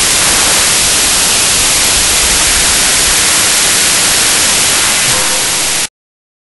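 Oxyhydrogen (HHO) torch flame hissing loudly and steadily, the sound cutting off abruptly near the end.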